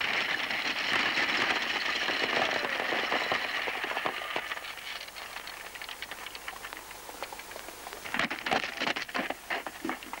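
Hoofbeats of a galloping horse team and the rattle of a horse-drawn stagecoach: a dense clatter, loudest in the first few seconds, then fading. Near the end comes a burst of louder hoofbeats from a single galloping horse.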